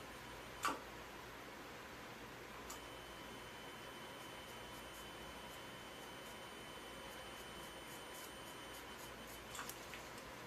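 Faint, steady, high electronic tone from an electrosurgical unit while the probe is switched on. It starts with a click a little under three seconds in and stops with clicks near the end. A single sharp click comes just under a second in.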